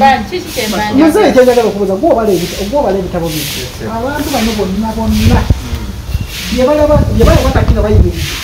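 Continuous conversational speech with no other clear sound. A couple of low rumbles on the microphone come about five seconds in and again near the end.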